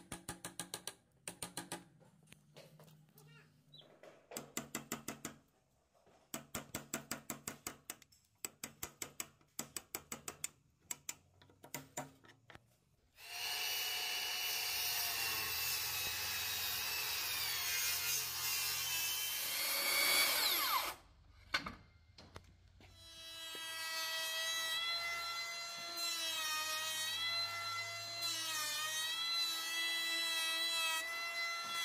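Bursts of rapid sharp taps on a wood chisel cutting a notch in a timber rafter. About 13 seconds in, a circular saw starts and rips along the board, then winds down with a falling whine. A couple of seconds later an electric hand planer starts and runs along the rafter's edge to the end, its whine dipping in pitch now and then under load.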